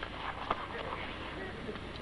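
Faint handling sounds from items being taken out of a handbag, with a light click about half a second in, over the steady hiss of an old film soundtrack.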